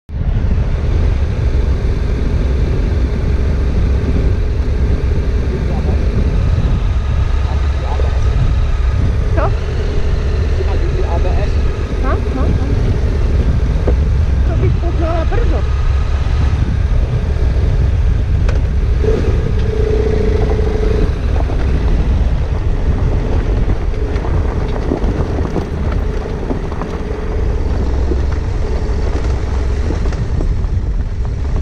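Adventure motorcycle engines running as the bikes ride, under a heavy low wind rumble on the camera microphone.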